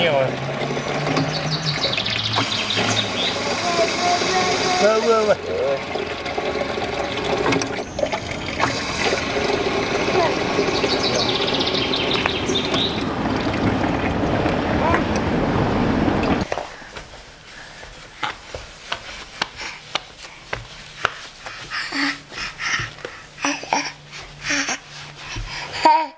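Water running from the spout of a green cast-iron water pump and splashing steadily. It cuts off suddenly about two-thirds of the way through, leaving a much quieter stretch of scattered clicks.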